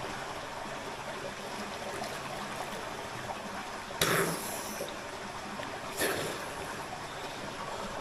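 Steady running and trickling water in a steaming hot spring pool, with two short splashes about four and six seconds in as a bather wades through the water.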